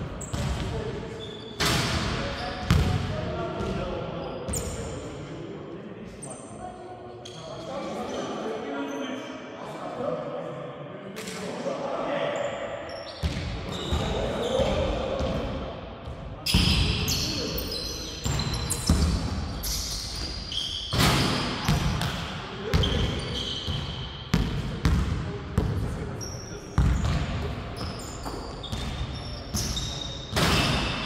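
Basketball bouncing on a hardwood gym floor during play, in irregular thuds that come thick and fast in the second half, along with players' footsteps and short squeaks, echoing in a large hall.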